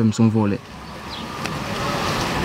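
A man's voice for the first half-second, then the rushing noise of a passing road vehicle, swelling gradually and holding steady.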